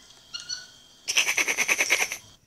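A monkey calling: a short high squeak, then about a second of rapid, shrill, pulsing screeching chatter.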